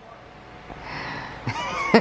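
A man laughing, stifled behind his hand at first: breathy, then breaking into voiced laughter near the end.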